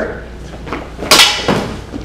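Two sharp clacks of duelling lightsaber blades striking during a fast exchange, the louder about a second in and the second half a second later.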